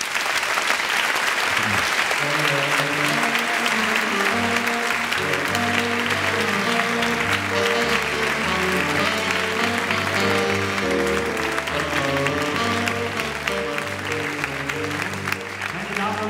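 Audience applauding, with stage music that comes in about two seconds in and plays on under the clapping, a bass line and chords moving in steps.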